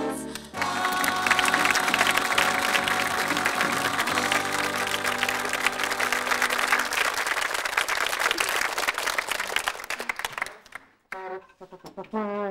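Audience applauding over the last held chord of a sitcom's sung theme song. The chord stops about seven seconds in, and the applause dies away shortly before the end.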